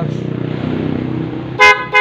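Newly installed PIAA horn on a motorcycle sounding a short, loud toot about one and a half seconds in, with a second toot starting right at the end, over a steady low hum. It is being test-sounded after installation and rewiring, and it works.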